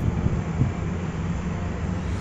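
Steady low rumble of outdoor background noise with no distinct tones or events.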